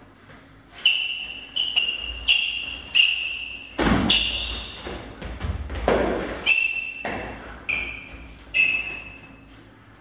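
Training sabres clashing in a rapid exchange: about ten sharp strikes, each with a short bright ring. Two heavier thuds come in the middle of the exchange.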